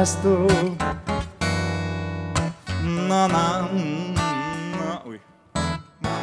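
Man singing to a strummed acoustic guitar, a bard song. The music breaks off about five seconds in, and a short sound follows just before the end.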